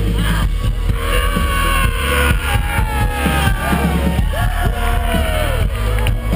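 Live band with a cello playing through a festival PA, heard loud from the crowd, with a heavy steady bass and a singing or bowed melody sliding in pitch over it.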